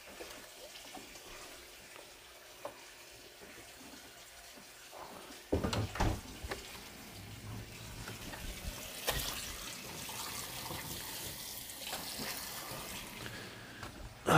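Sponge wiping and scrubbing the plastic inside of a freezer. After a few quiet seconds there are two knocks, then steady rubbing with a few small clicks.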